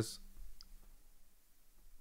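Faint clicks of fingers handling the knobs of a guitar distortion pedal, over a faint steady low hum.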